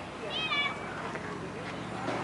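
Outdoor voices in the background, with one short high-pitched call about half a second in.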